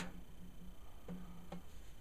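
A few faint clicks of snare-wire straps and the strainer being handled on a brass snare drum, the first sharp and the rest soft, over a low hum.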